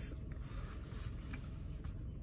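Faint rubbing and a few light ticks from a plastic fabric-conditioner bottle being handled, over a low steady rumble.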